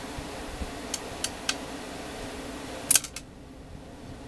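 Scissors clicking as they are handled: three light clicks about a second in, then a louder quick cluster of clicks just before three seconds. After the louder clicks the steady background hum quietens.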